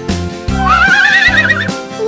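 A horse whinny, one wavering call lasting about a second, over the steady, beat-driven backing music of a children's song.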